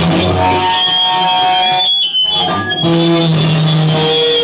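Live rock band with electric guitars and drums playing loudly in a room, the sound dropping out briefly about halfway through before the guitars come back in.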